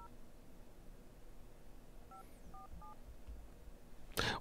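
Telephone keypad touch tones dialing a number: one short two-note beep at the start, then three quick beeps about two seconds in, faint against a quiet room.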